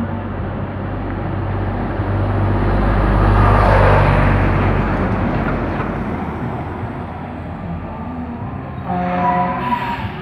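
A road vehicle passing on the street: engine and road noise grow louder to a peak about four seconds in, then fade away.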